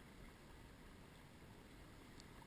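Near silence: only a faint, steady background hiss.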